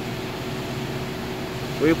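BMW F33 428i running at idle with a steady hum, just started after a starter lock reset. A voice begins at the very end.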